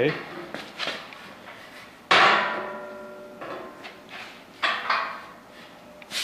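Steel angle and tubing pieces knocking together as they are worked loose, with one loud clang about two seconds in that rings on for about a second, and a few lighter knocks after it.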